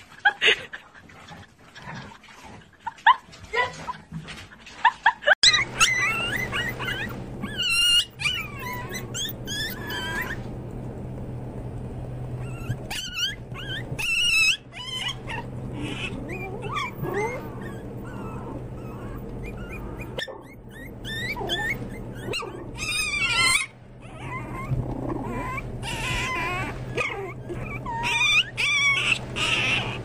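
Sharp knocks and clicks for about five seconds, then a litter of puppies whimpering and yipping in high, wavering squeaks over a steady low hum.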